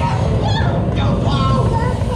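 Flying-theatre ride soundtrack, played loud: music over a heavy, steady low rumble, with voices through it.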